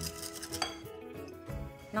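Wire balloon whisk beating eggs, maple syrup and sugar in a glass bowl, the wires clinking rapidly against the glass; the clinking dies away about a second in.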